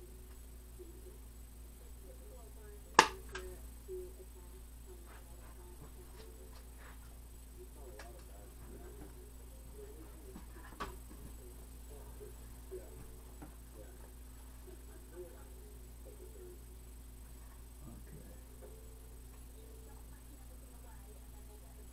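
One loud, sharp snap about three seconds in, typical of a hand staple gun driving a round wire staple, followed by a few much fainter clicks and knocks of handling over a low steady hum.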